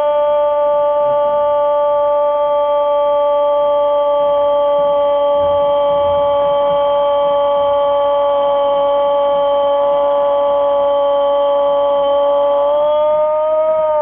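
Radio football commentator's drawn-out goal cry: one long held "gol" vowel, sustained at a steady high pitch for the whole fourteen seconds, rising slightly near the end.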